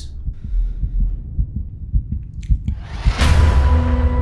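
Trailer sound design: low heartbeat-like thuds for about three seconds, then a loud boom about three seconds in that settles into a steady low drone.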